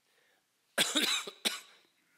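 A man coughing: one longer cough just under a second in, followed by a short second cough.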